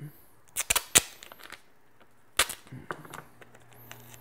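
Sharp snapping rips of clear adhesive tape being pulled and torn from the roll: three close together about half a second to a second in, and one more about two and a half seconds in, with a few small ticks after it.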